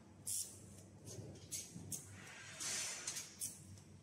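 Welding on a titanium anodizing rack: short hissing bursts, one weld after another, the longest a little before three seconds in, followed by a few sharp ticks.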